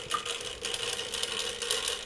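Clockwork spring motor of an antique Radiguet tin toy liner running, a steady fast rattling whir of small gears.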